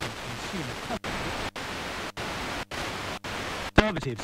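FM radio hiss from an Eton G3 receiver tuned between stations, stepping up the band: the static cuts out for an instant at each tuning step, about twice a second.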